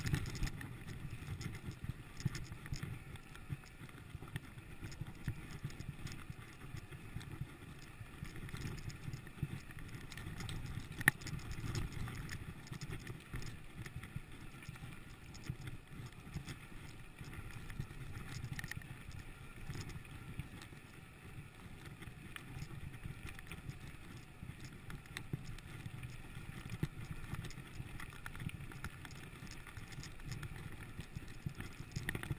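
Mountain bike rolling over a rocky gravel trail: a steady rumble of tyres on stones with scattered clicks and knocks from the bike jolting over the rocks, the sharpest knock about eleven seconds in.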